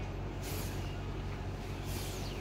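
A sari's fabric swishing as it is shaken out and spread, in two short swishes, one about half a second in and one near the end, over a steady low hum.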